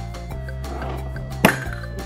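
A single sharp pop about one and a half seconds in, as the plunger forces the glass marble down into the neck of a Ramune soda bottle and breaks its seal. Background music plays throughout.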